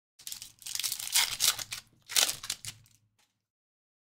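Foil wrapper of a Topps Chrome soccer card pack being torn open and crinkled, with two louder rips about a second apart.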